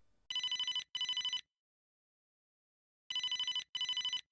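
Telephone ringing in the British double-ring pattern: two short trilling rings, a pause of about two seconds, then two more.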